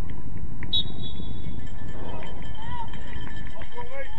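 A referee's whistle blown once for kick-off, a short high note about a second in, over wind rumbling on the microphone. Players' shouts follow.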